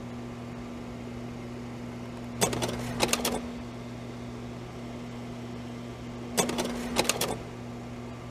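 A steady low hum with two short bursts of rapid mechanical clicking, about two and a half and six and a half seconds in.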